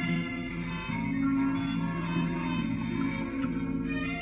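Enka backing band playing an instrumental interlude with no singing: held chords with a steady low line underneath.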